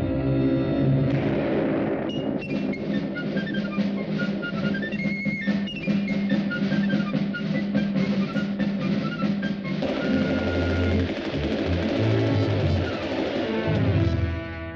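Orchestral cartoon score with a rapid snare drum roll under quick, short high notes. About ten seconds in, a heavier low part comes in.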